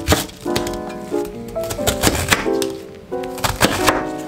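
A chef's knife cutting through a head of Chinese cabbage onto a thin plastic cutting board: several sharp chops, in small clusters, under background music.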